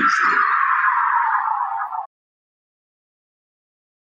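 Countdown-timer end sound effect: a hissing, falling sweep that slides steadily down in pitch and cuts off abruptly about two seconds in.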